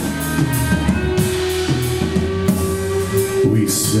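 Live rock band playing an instrumental passage: electric guitars over a drum kit, with regular drum hits and cymbal strikes.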